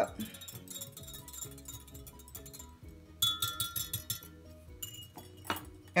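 Metal wire whisk stirring liquid in a glass measuring cup, its wires clinking lightly against the glass, over soft background music.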